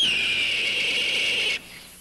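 A raptor's screech, one long slightly hoarse cry that drops in pitch at the start, drifts a little lower, and cuts off after about a second and a half.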